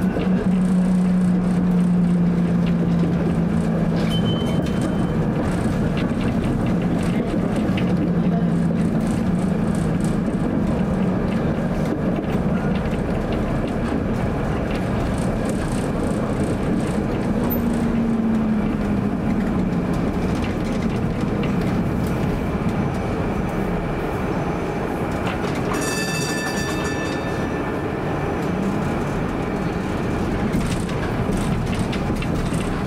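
A 1947 PCC streetcar running along its rails: a steady rumble of wheels on track with a low motor hum that holds steady at first, then glides up and down in pitch a few times. A brief high ringing tone sounds about four seconds before the end.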